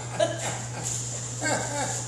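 Brief vocal sounds, once about a quarter second in and again around a second and a half in, over a steady low electrical hum.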